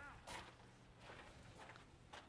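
Near silence, with a few faint footsteps on the paved path.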